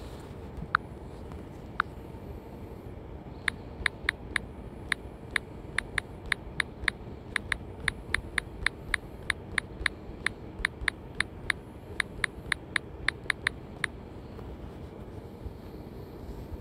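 Smartphone on-screen keyboard clicking with each key press as a search is typed: two single clicks, then a quick run of about three clicks a second that stops shortly before the end, over a steady low background rumble.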